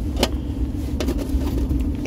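Steady low rumble and hum inside a car cabin, with two light clicks about a quarter second and a second in as the metal coin tin is handled and its lid closed.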